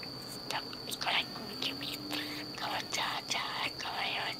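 Budgerigar chattering: a string of short, scratchy warbling bursts that grows busier from about half a second in.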